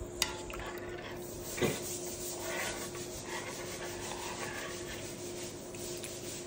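A spoon stirring noodle soup in an enamelled cast-iron pot, rubbing and scraping through the noodles, with a sharp click just after the start and a knock against the pot near two seconds in. The stirring is to separate noodles that have stuck together.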